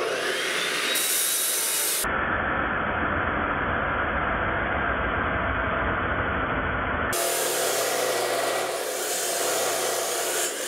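Porter-Cable 15-amp abrasive chop saw spinning up with a rising whine, then its cutoff wheel grinding steadily through a piece of steel angle iron.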